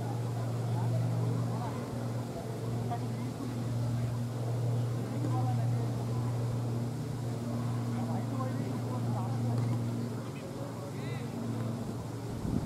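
A steady low engine-like hum running throughout and easing off near the end, with faint voices in the background.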